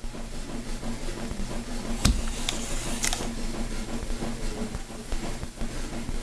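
Portable total parenteral nutrition (TPN) food pump running with a steady whir, with two sharp clicks about two and three seconds in.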